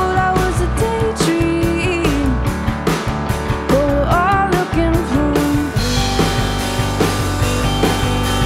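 A live band playing a pop-rock song: a woman singing over a Yamaha keyboard, bass guitar and drum kit. The vocal line stops about six seconds in while the band keeps playing.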